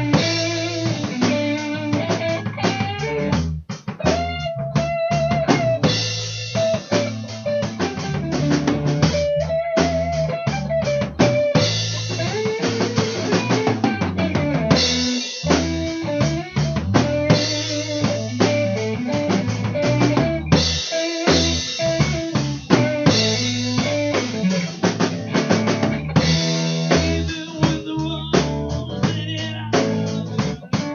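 Band music with a drum kit keeping the beat under guitar, without vocals.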